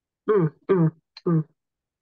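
Three short vocal sounds from one person in quick succession, heard over a video call, with dead silence between them.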